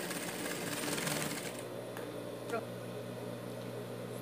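Industrial straight-stitch sewing machine running a short seam through fabric, then stopping about a second and a half in. A steady low hum continues after the stitching stops.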